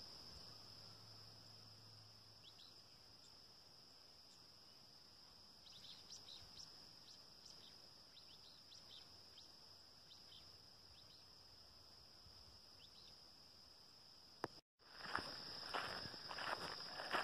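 Near silence: a faint, steady, high insect drone, with a few short clusters of faint, high bird chirps through the middle. A single click near the end, just before the sound cuts out for a moment.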